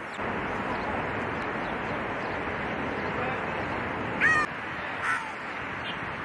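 Steady outdoor hiss with two short, loud cries, the first and loudest a little after four seconds in, the second about a second later.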